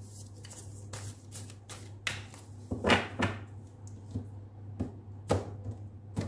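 Hand-shuffling a deck of oracle cards: a run of quick soft card clicks, then cards slapped down on the table with a few sharper taps about three and five seconds in.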